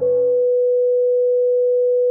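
Heart-monitor flatline sound effect: one steady electronic tone held without a break, marking the code's 'death'.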